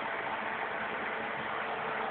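A steady, even hiss with no rhythm or change in level.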